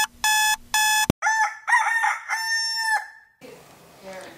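An electronic alarm clock beeps three times, then a click, then a rooster crows: a call that bends up and down and ends on a long held note. It marks the wake-up in the morning.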